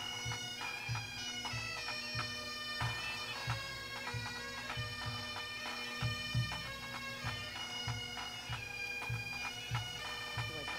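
Bagpipes playing a melody over their steady drones, with a low beat about two to three times a second underneath.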